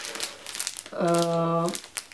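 A clear plastic bag crinkling as it is handled, with a run of sharp crackles in the first second. About a second in, a woman's drawn-out, steady vowel sound is heard.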